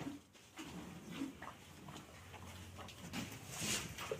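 Gir cattle making a string of short, low grunting calls during hand-milking, with a brief hiss near the end.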